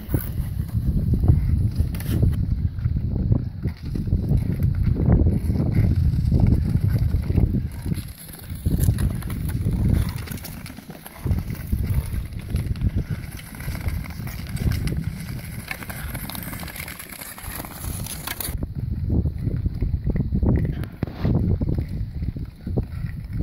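Long-distance (Nordic) skates on clear lake ice: the blades' scraping hiss over a heavy, uneven low rumble as the skaters stride and glide along. The high hiss cuts off sharply about three-quarters of the way through.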